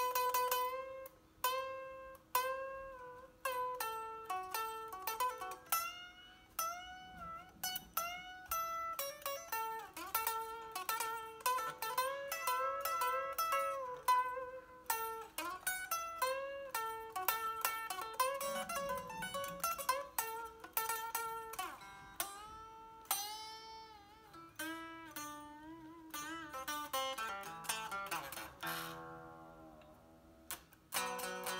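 Unamplified electric guitar played lead: a rock solo of separately picked single notes with frequent string bends that rise and fall in pitch, the bare strings heard without an amp.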